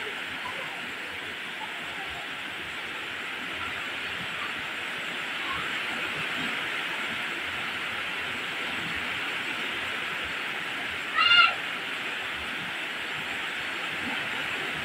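Steady rain falling on leaves and wet ground, a continuous even hiss. About eleven seconds in, a brief high-pitched call rises over it.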